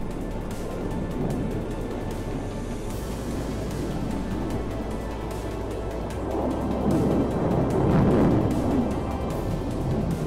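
Background music over the rushing roar of an F-22 Raptor's jet engines, which swells louder about seven to eight seconds in.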